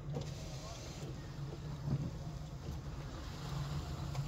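Car engine and tyre noise heard from inside the cabin while driving slowly: a steady low rumble.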